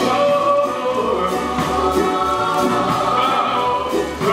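Live band music with singing: voices hold a long sung note over the band's bass line.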